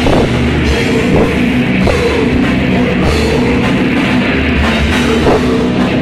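Old-school death metal band playing live: distorted electric guitars riffing over a pounding drum kit, loud and dense throughout.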